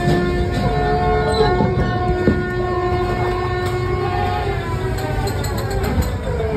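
Funfair dark-ride car rumbling along its track, under loud sustained droning tones from the ride's sound effects.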